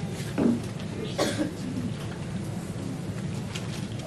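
A man clearing his throat twice, about half a second and just over a second in, over a steady room hiss.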